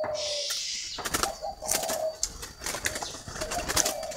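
Spotted doves cooing softly in short low phrases, with a series of sharp clicks and rustles in between.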